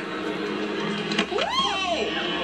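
Busy shopping-mall hubbub of crowd voices with background music, and near the end a woman's single rising-then-falling cry as she trips and falls to the floor.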